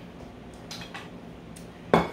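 A plate set down on a kitchen countertop, landing with one sharp clack near the end, after a couple of faint knocks.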